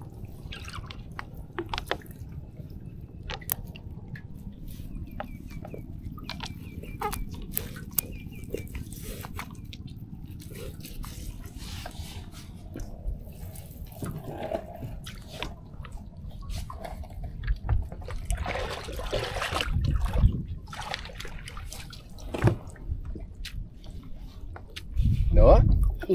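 Water dripping and splashing as a gill net is hauled in over the side of a small boat and fish are worked out of the mesh, with many light clicks and knocks of hands and net on the hull. Louder splashes come now and then, strongest in the second half.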